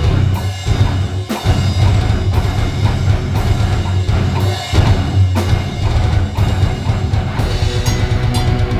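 Band playing an instrumental passage live: a drum kit with bass drum and snare hits driving under loud electric guitars and bass, with no vocals.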